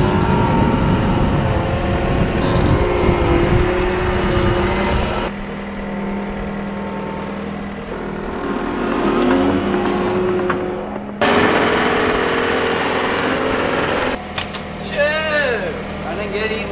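Diesel engine of a John Deere compact track loader running steadily while it carries and sets down a round hay bale on a bale spear, with a rattling rumble at first. The sound changes abruptly several times.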